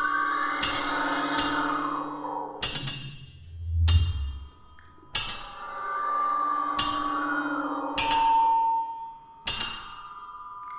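Contemporary chamber ensemble with solo flute and live electronics playing: sharp, dry percussive strikes every second or two over held steady tones that swell and fade between them.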